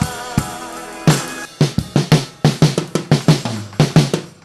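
Acoustic drum kit played along to the recorded song. A few strokes sound over the held notes of the recording. Then, from about a second and a half in, a fast run of strokes goes around the drums as the song closes.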